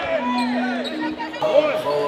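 Several men's voices talking and calling out over one another in a team huddle, over the noise of a crowd in the stands.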